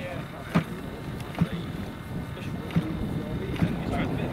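Zenoah 80cc twin petrol engine of a large RC model plane being flicked over by hand at the propeller, a short sharp knock with each flick, four times; the engine does not catch.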